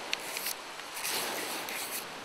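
A lump of campfire charcoal scratching across notepaper in short drawing strokes, over a steady background hiss.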